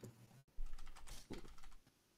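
Faint typing on a computer keyboard: a short run of irregular keystrokes about half a second in.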